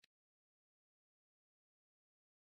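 Near silence: the soundtrack is muted, with only one faint, brief tick at the very start.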